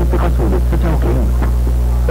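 Loud, steady low electrical hum, like mains hum, running under a commercial soundtrack. A voice is heard over it and stops about a second and a half in.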